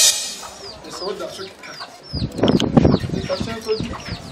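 Chickens: a steady run of short, high, falling peeps, about three a second, with a louder, lower call about two seconds in.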